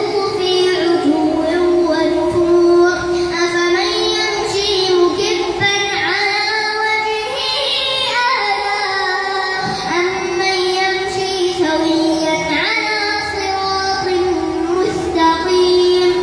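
A boy's voice reciting the Quran aloud in a melodic chant into a microphone as prayer leader, holding long ornamented notes that glide up and down, with short pauses for breath.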